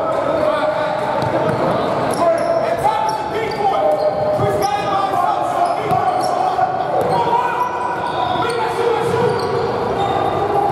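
Basketball dribbled on a hardwood gym floor, with players' voices, echoing in a large hall.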